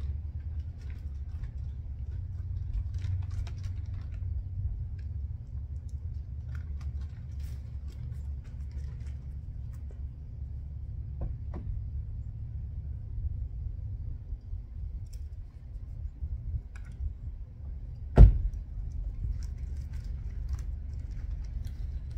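Steady low rumble with faint small clicks and rattles of hardware being handled, and one sharp, loud knock about eighteen seconds in.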